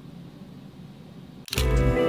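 Faint room tone with no distinct sound for about a second and a half, then acoustic guitar background music comes back in abruptly.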